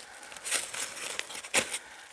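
Hands scraping and crumbling dry soil around a young garlic plant as it is dug loose to expose its roots, with soft rustling and a few short crackles.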